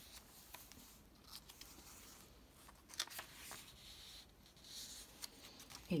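Faint rustling of paper and card as the pages of a handmade junk journal are turned and handled, with a few light clicks, the sharpest about three seconds in.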